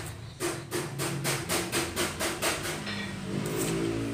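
Rapid, even knocking, about four strikes a second, like hammering, that stops a little under three seconds in. A low droning hum follows near the end.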